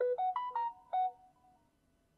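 A smartphone notification chime, a short melody of about six quick pitched notes, sounding once and fading out in under two seconds.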